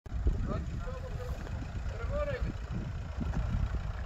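Faint voices of people talking at a distance over a constant, uneven low rumble.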